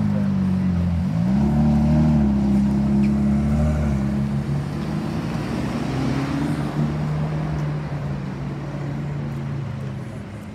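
Lamborghini Aventador SVJ V12 and Mercedes-AMG GT Black Series V8 pulling away at low speed in traffic; the engine note dips about a second in, rises again, then holds steady.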